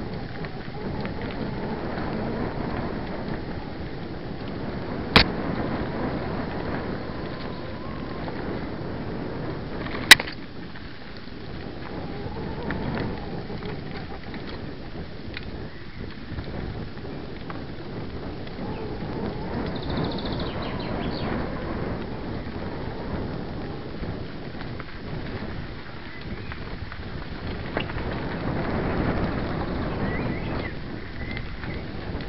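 Bicycle ride on a dirt forest track heard from a camera carried on the bike: a steady rough rumble of wind buffeting and rattle, rising and falling, with two sharp knocks about five and ten seconds in as the camera is jolted.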